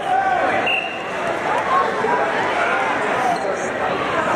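Coaches and spectators shouting in a gymnasium during a youth wrestling bout, with a short high squeak about a second in, typical of a wrestling shoe on the mat.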